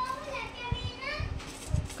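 Faint voices in the background, with a couple of low knocks from a fishing rod being handled.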